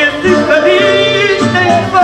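Male fado singer holding long notes with a wide vibrato, accompanied by a Portuguese guitar and a viola (classical guitar) plucking underneath.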